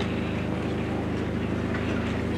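Steady low hum with faint hiss from a public-address system's open microphone and loudspeakers.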